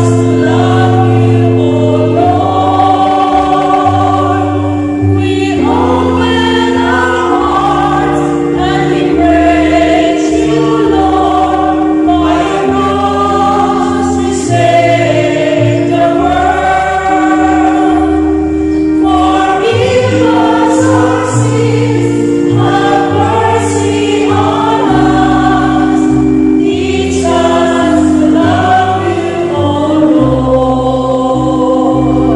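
A choir singing a Lenten entrance hymn in phrases of a few seconds each, over steady sustained accompaniment chords and a moving bass line.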